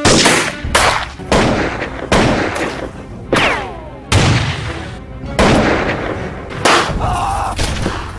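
A shootout of rifle and revolver gunshots: about eight loud shots at irregular intervals, each ringing out briefly. One shot about three and a half seconds in is followed by a falling whine.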